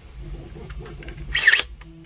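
Handling noise from a 3D-printed foam-dart blaster being picked up and turned, with faint clicks and one short scraping rasp of plastic parts about one and a half seconds in.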